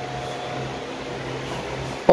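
A steady low hum, the room's background noise, with a faint thin high tone that fades out in the first half-second.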